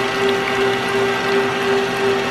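KitchenAid Artisan stand mixer running at a steady speed, its motor giving a constant hum while the beater churns a thick pudding and cream-cheese mixture in the steel bowl.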